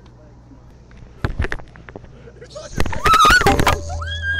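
A few sharp clicks, then a loud rush of noise about three seconds in, with a woman's short high-pitched cry through it.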